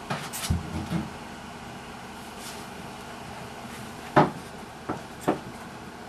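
Hollow plastic rocker gaming chair bumped and rocked by a puppy: a low thump about half a second in, then three short knocks near the end, over a steady room hum.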